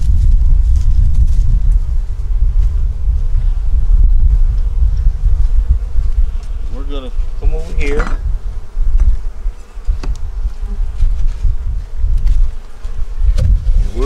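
Honeybees buzzing around the hive, with wind rumbling on the microphone. A brief voice-like sound comes about halfway through.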